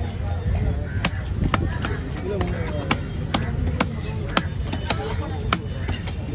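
Heavy cleaver chopping fish on a wooden log block: a run of sharp chops, roughly two a second, as the fish is cut into pieces.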